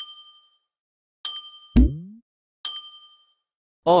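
Subscribe-button animation sound effects: three bright bell-like dings about a second and a half apart, each ringing out for about half a second. Between the second and third a short, low pop with a quick upward slide is the loudest sound.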